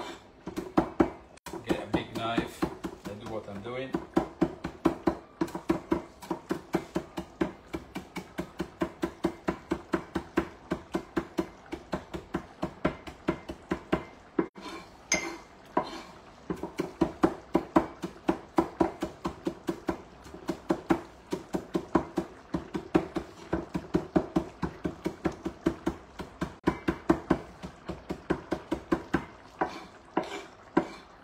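Kitchen knife chopping fresh parsley on a wooden cutting board: quick, even strokes, several a second, with a short pause about halfway through.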